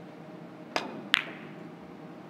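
Three-cushion billiards shot: the cue tip strikes the cue ball with a click, then under half a second later a louder, ringing click as the cue ball hits another carom ball.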